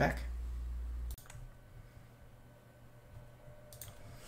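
A low steady hum that cuts off suddenly about a second in, leaving a quiet room with a few faint clicks from working a computer, just after the cut and again near the end.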